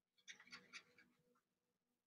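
Faint scratching of a pen drawing on paper: a quick flurry of short strokes lasting about a second, over a low steady hum.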